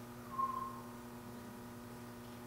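A pause filled by a steady low electrical hum; about a third of a second in, one short high whistle-like tone sounds for under half a second, falling slightly in pitch.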